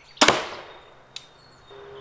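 Zubin X340 compound crossbow shooting a carbon fibre bolt: one loud, sharp crack of the string and limbs releasing, dying away quickly, then a faint short click about a second later.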